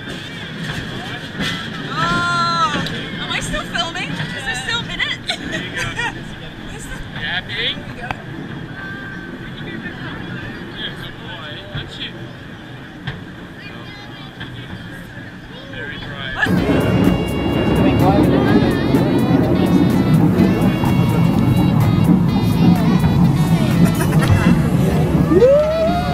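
Passengers' voices and babble over the running noise of a steep incline railway carriage. About two thirds of the way through, music with a steady beat comes in suddenly and is louder than everything else.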